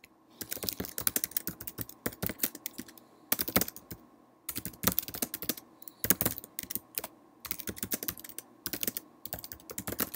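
Typing on a computer keyboard: quick runs of key clicks in bursts with short pauses. A sentence is being typed into a text box.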